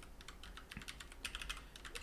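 Computer keyboard typing: a quick, faint run of key clicks.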